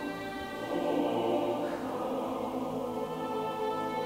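Mixed choir singing slow, held chords, accompanied by violins.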